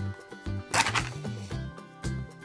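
A wooden match struck once on the side of its box, a brief burst of noise about three-quarters of a second in as it catches, over background music.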